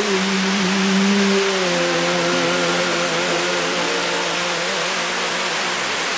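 River rapids rushing, a steady roar of white water. Over it a sustained note of background music is held and fades out about four to five seconds in.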